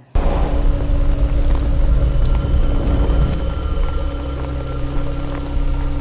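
Heavy rain pouring in a film soundtrack, cutting in suddenly, with a deep steady rumble and a few held musical tones under it.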